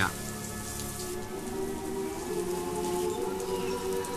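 Steady rain falling, an even hiss, with soft sustained tones of background music underneath.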